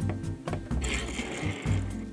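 Background music, with a short scraping rattle of plastic toy pieces moved by hand across the tabletop starting about a second in.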